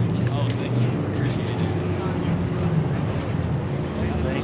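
An engine running steadily with a low, even hum, and voices of a crowd talking underneath.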